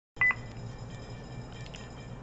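A short high electronic beep of two quick pulses right at the start, followed by a faint steady low hum of room tone.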